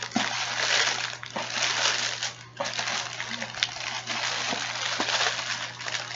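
Plastic snack bags of gummy candy crinkling and rustling as hands dig through a cardboard box full of them, with a brief lull about two and a half seconds in.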